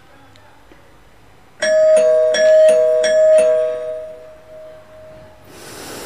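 An electronic doorbell-style chime rings a quick run of about six pitched tones, starting about a second and a half in, then fades out over the next two seconds.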